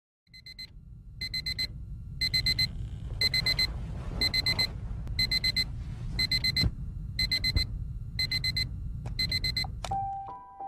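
Mobile phone alarm beeping: groups of four quick, high beeps about once a second, ten groups in all, over a steady low rumble.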